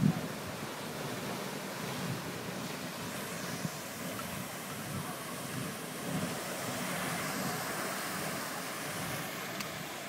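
Grand Geyser erupting: a steady rush of water and steam, mixed with wind noise on the microphone. A brief thump comes right at the start.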